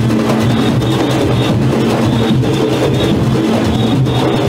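A Junkanoo band's goatskin drums playing a loud, continuous driving rhythm, with sustained low notes from other instruments underneath.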